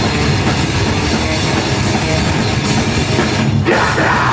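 Live metalcore band playing at full volume: heavily distorted guitars over a pounding drum kit. There is a short break near the end, and then the band crashes back in.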